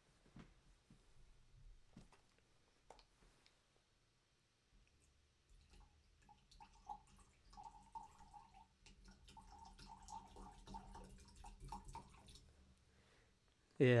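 Fruit juice poured in a thin stream from a raised carton into a glass wine glass: faint splashing and trickling from about halfway in until shortly before the end.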